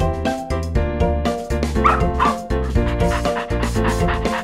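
Background music with a beat, over which a small dog yips twice about two seconds in.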